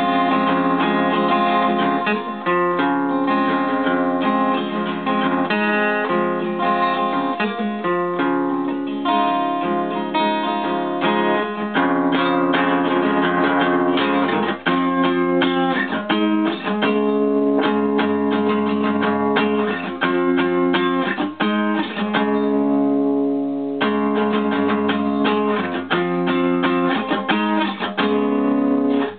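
Acoustic guitar strumming a chord progression, tuned half a step down, played without singing. The strumming thins out briefly about three quarters of the way through.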